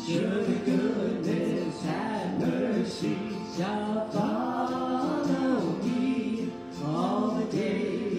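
A man and a woman singing a slow hymn in phrases of held notes, accompanied by acoustic guitar, with a short pause for breath between phrases near the end.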